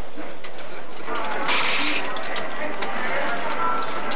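Casino room noise: a steady wash of crowd chatter around a spinning roulette wheel, with a brief louder rush about a second and a half in.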